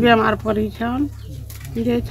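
An elderly woman's voice speaking, breaking off about halfway through and starting again near the end, over a steady low hum.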